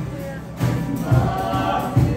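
Several voices singing together over music with a steady low beat; the singing grows stronger in the second half.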